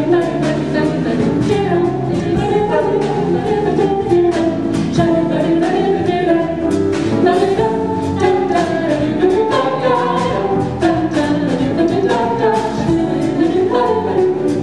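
Five-voice vocal jazz quintet singing close harmony in a swing style, backed by a rhythm section with steady cymbal and drum strokes.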